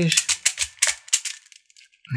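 Hasbro Atomix moving-bead puzzle being twisted 180 degrees by hand: its beads rattle and click in their tracks in a quick run of sharp clicks that stops about a second and a half in.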